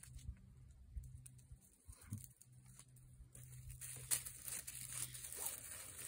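Faint rustling and crackling of dry leaves and twigs underfoot, with a few light snaps at first, growing busier and louder about three seconds in.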